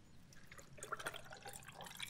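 Whiskey sour mixture poured from a glass pitcher onto ice in a stainless steel cocktail shaker: a faint liquid trickle with small scattered ticks.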